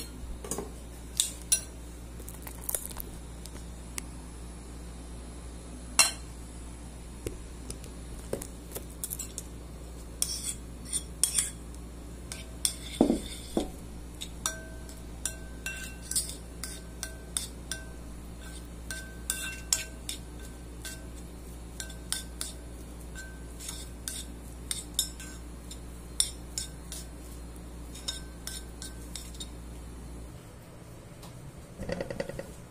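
A metal spoon clinking and scraping against a ceramic plate in irregular taps as butter and grated cheese are stirred together in it.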